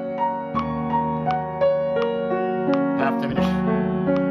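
Upright piano playing seventh-chord arpeggios in the right hand, even notes moving up and down over a held left-hand chord. The arpeggios are played in time to a metronome set at 84 beats a minute.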